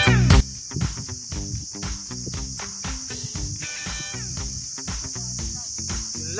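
Insects, such as crickets or cicadas in summer grass, droning in one steady high-pitched band, with quieter music and a regular beat playing under it. A louder burst of music cuts off just after the start.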